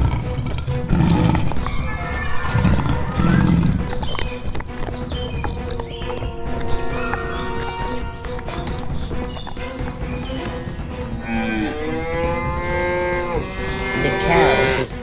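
Background music with held tones, a few low rumbles in the first few seconds, and a long cow's moo near the end.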